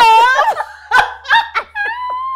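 Two women laughing hard: a loud, high-pitched laugh at the start, then short separate bursts of laughter, and a long held high note beginning near the end.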